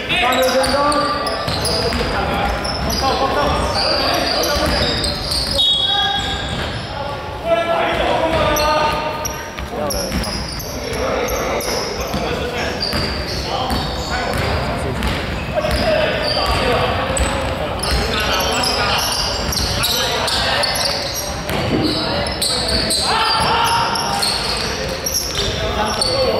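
Basketball game in a large echoing sports hall: a ball bouncing on the wooden court as players dribble, with players' voices calling out over the hall's steady din.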